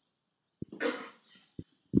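A few short, low thumps of a microphone being handled, with a brief breathy noise, like a cough or a sharp exhale, about a second in.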